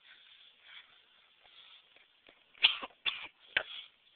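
Three sharp knocks from the broken skateboard in quick succession, about two and a half seconds in, the first the loudest.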